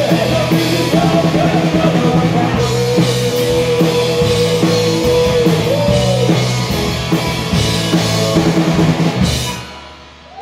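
A garage rock band playing live: drum kit, electric guitar, bass guitar and vocals, with a long held note in the middle. The music stops shortly before the end.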